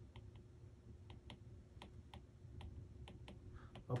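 Faint, irregular clicks of a stylus tip tapping on a tablet's glass screen while handwriting, about a dozen over the few seconds.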